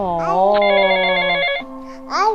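Mobile phone ringing: a rapid electronic warbling ringtone that starts about half a second in and breaks off about a second later, over a drawn-out voice.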